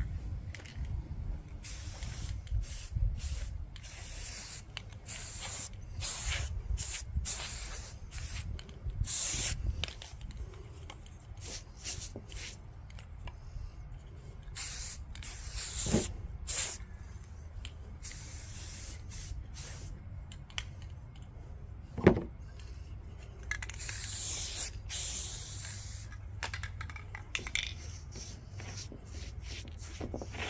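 Aerosol spray-paint cans hissing in a series of bursts, many short and a few held for a second or more. A low rumble runs underneath, with a couple of sharp knocks, the loudest about two-thirds of the way through.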